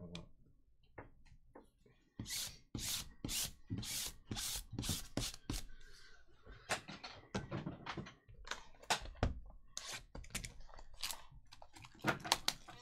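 Hands handling a sealed cardboard hobby box of hockey cards and crinkling and tearing its plastic shrink wrap: a dense run of irregular sharp crackles and rustles.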